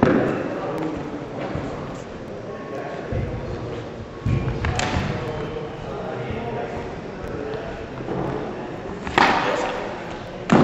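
Several dull thuds and slaps, a few seconds apart, from two people grappling on a padded gym mat in a knife-defence drill, over indistinct talking.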